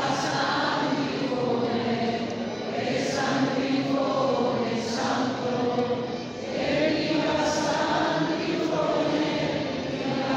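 A group of voices singing a slow hymn together in a church, with long held notes.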